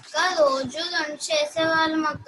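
A young girl singing a song unaccompanied, in short phrases with some held notes, heard over a video-call connection.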